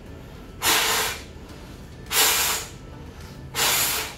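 Three hard blows of breath through a loose-fitting face mask, each a short rush of air about a second and a half apart. The mask is too loose: the air escapes up into the face and around its edges instead of reaching the candle.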